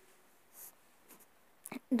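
A quiet pause in a woman's speech: faint room noise with a brief soft noise about halfway, a few small clicks, then her voice starts again at the very end.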